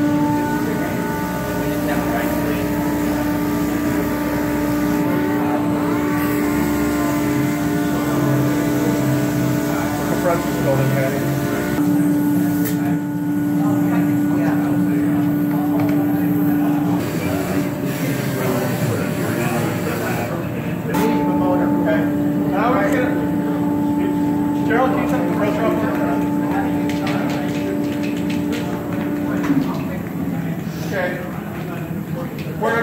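Dual-action (DA) sander running with a steady whine on a plastic bumper, sanding the repair area down to take plastic filler. It stops about 17 seconds in, starts again a few seconds later and stops just before the end.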